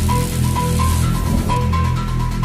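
Background electronic music in an instrumental stretch with no vocals: deep held bass notes under a short high synth note that repeats at an even pace, and a hiss that fades out about one and a half seconds in.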